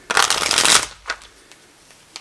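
A deck of tarot cards being riffle-shuffled: one quick fluttering burst lasting under a second, followed by a couple of faint taps.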